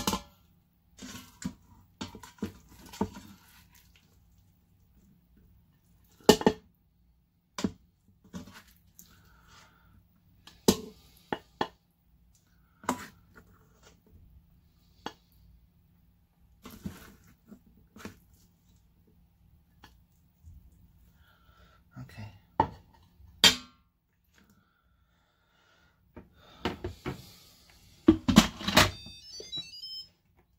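A spatula scraping and knocking against the stainless-steel inner pot of an Instant Pot pressure cooker and a ceramic plate as rice and chicken are served: scattered sharp clicks and knocks, busiest near the end.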